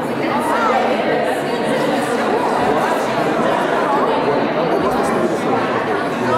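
Crowd chatter: many people talking at once in overlapping conversations, with no single voice standing out, in a large room.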